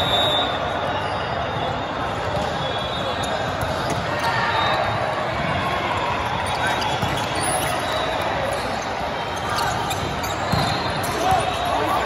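Indoor volleyball rally in a large hall: repeated thuds of the ball being hit and bouncing, over a steady din of players' voices from the surrounding courts.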